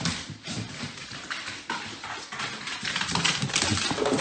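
A dog's paws and claws tapping down a flight of stairs in a quick, irregular run of footfalls.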